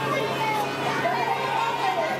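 Background chatter of children's and adults' voices, none of it clear speech, over a steady low hum.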